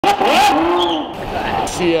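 Loud voices exclaiming in drawn-out calls that rise and fall in pitch.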